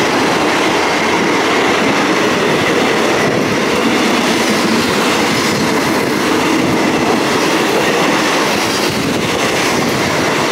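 Passenger train coach running, heard through its open window: a steady rumble of wheels on the rails, with some clatter.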